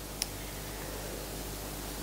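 Steady background hiss of room tone and recording noise, with one faint click about a quarter second in.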